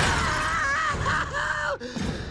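A crashing, shattering noise dies away in the first half second. Then a man's voice cries out in pain for about a second, its pitch wavering.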